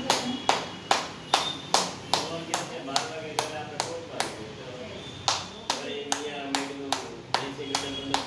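A woman clapping her hands in a steady rhythm as an exercise, about two to three sharp claps a second, with a voice singing along on held notes.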